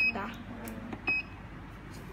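Two short, high electronic beeps about a second apart from the control panel of a D-669 heated slimming blanket, each one a press of the temperature-up button raising the zone A heat setting.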